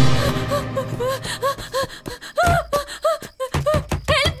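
A young woman gasping and panting in fright: short, high, voiced gasps about three a second. Loud film music fades out during the first second.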